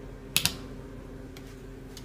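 A wall switch pressed by a finger: a sharp double click, then a fainter click about a second later, over a low steady hum.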